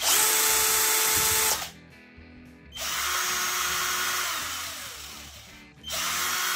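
Two cordless drill-drivers, the brushed Philco Force PPF03 and the brushless Fortg FG3005, run in turn with no load, each trigger pull giving a steady motor whine: the first for about a second and a half, the second, lower in pitch, for about three seconds before spinning down.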